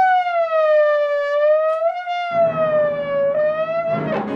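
Trombone holding one long note that sags slowly in pitch and bends back up, like a siren. About halfway through, low piano notes come in underneath.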